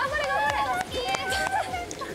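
Several young women's voices shouting and calling out excitedly, with a few sharp clicks or knocks among them.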